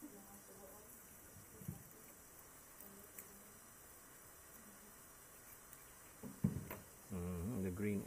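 Quiet background with faint handling sounds and a few sharp clicks from small metal sampling tools, the loudest click about six and a half seconds in; a man's voice starts talking about a second before the end.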